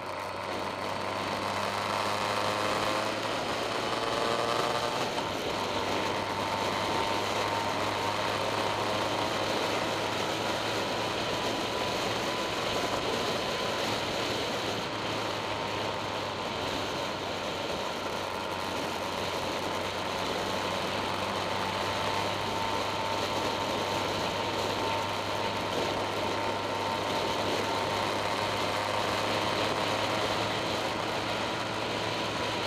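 Motorcycle engine heard from an onboard camera at road speed, with steady wind and road rush. The engine note rises over the first few seconds as the bike accelerates out of a bend, then holds nearly steady while cruising.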